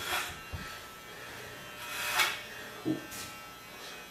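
Corded electric hair clippers buzzing steadily while cutting hair, with a few brief louder hissy swells.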